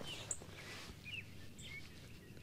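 A few faint, brief bird chirps over quiet outdoor background noise.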